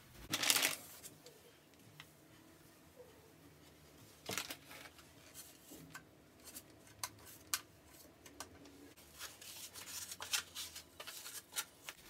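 Soft rustling and rubbing of a wipe on the washing machine's white top, with a louder rustle just after the start and another around four seconds in. From about halfway on, scattered small clicks and light knocks come from objects being handled and set down.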